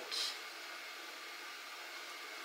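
Steady hiss of background noise, with a short breathy hiss at the very start.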